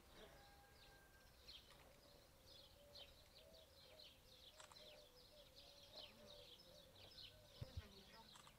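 Faint outdoor ambience: small birds chirping in quick, high, repeated notes over a steady, wavering insect buzz, with two soft low knocks near the end.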